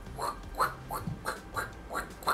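A man making short, squeaky mouth noises, each falling in pitch, about six in two seconds, playing at Spider-Man shooting webs.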